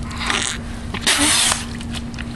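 A person slurping muddy puddle water from cupped hands, then a louder hissing splutter at the mouth about a second in, lasting half a second.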